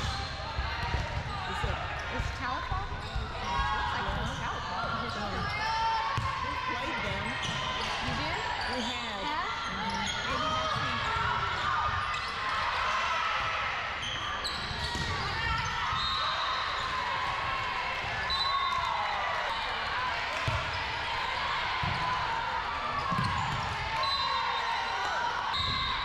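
Indoor volleyball rally: the ball being struck and bouncing on the hardwood court, over a steady background of player and spectator voices in a large gym.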